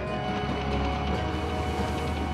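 A tank's engine rumbling with its tracks clattering, under background music holding long steady notes.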